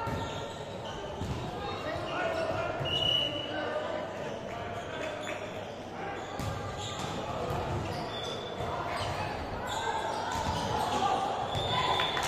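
A volleyball being struck and hitting the hard court floor during a rally in a large sports hall: several sharp thuds at irregular intervals that echo, with players shouting.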